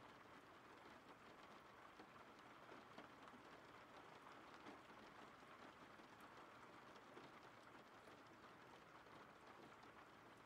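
Faint background rain: a steady, even hiss.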